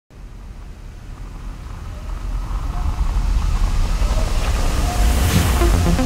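Cinematic electronic intro music: a deep bass rumble swells steadily louder, with a rising whoosh about five seconds in, and a pulsing electronic beat starts near the end.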